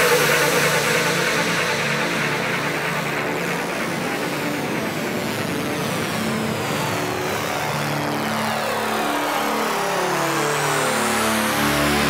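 Full-on psytrance breakdown with the kick drum dropped out: synth sequences stepping in pitch under a long falling sweep, then rising sweeps building up near the end.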